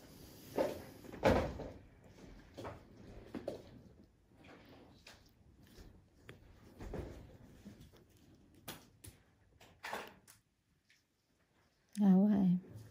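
Scattered soft knocks and clicks of handling, with the loudest about a second in.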